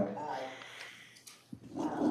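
Quiet speech: faint voices trailing off, a couple of light clicks in the lull, then a voice starting up near the end.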